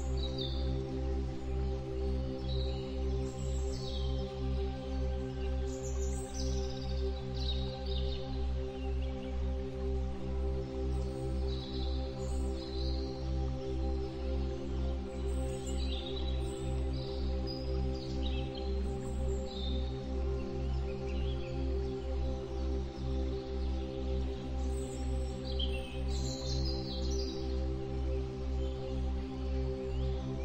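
Ambient meditation music: sustained drone tones over a low, evenly pulsing throb about twice a second, with scattered bird chirps above.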